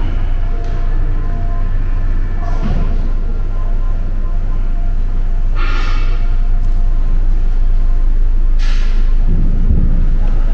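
A steady, loud low rumble that swells slightly, with three short hissy bursts about three, six and nine seconds in.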